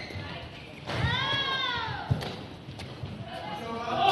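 Badminton rally on an indoor court: a sharp crack of a racket hitting the shuttlecock about two seconds in, low thuds of players' feet, and a drawn-out pitched squeal that rises and falls about a second in.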